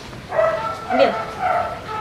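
A Shiba Inu whining in a few short, high-pitched cries.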